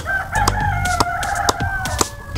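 A rooster crowing once, one long call, with several sharp knocks of a machete chopping into guava wood.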